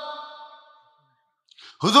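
A man's amplified voice through a public-address system trails off with a short echo into a pause. A quick intake of breath follows, and then he starts speaking again near the end.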